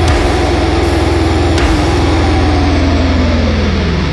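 Heavy metal recording: a sustained, distorted low tone that slides steeply down in pitch near the end, over a dense low rumble.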